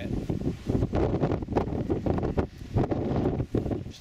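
Wind buffeting the microphone in uneven gusts, a rumbling rush with irregular rises and dips.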